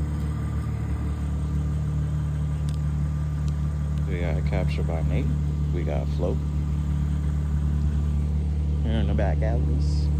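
BMW M3 with a catless downpipe and Valvetronic exhaust idling as a steady low drone, with people talking faintly in the background.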